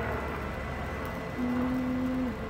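Steady low outdoor rumble. About one and a half seconds in, a person's voice holds one steady low note for about a second.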